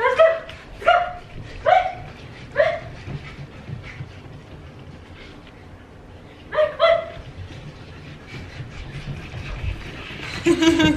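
Cavapoo puppy giving short, high yipping barks. There are four about a second apart, a pause, then two quick ones about six and a half seconds in.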